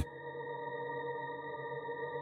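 Background ambient music: a steady drone of several held tones, unchanging through the pause in the narration.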